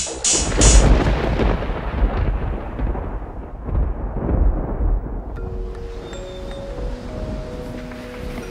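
A deep boom under the title card that rumbles and dies away over about four seconds, its high end fading first. About five seconds in, soft held music notes come in.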